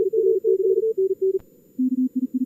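Morse code (CW) tones from a contest simulator: two signals keying at once at slightly different pitches, then after a short gap a lower-pitched signal starts near the end. A single sharp click about a second and a half in.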